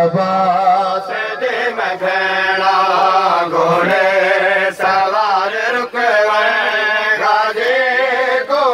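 A man chanting a noha, a Shia mourning lament, into a microphone through a loudspeaker, in long wavering held notes that run on without a break.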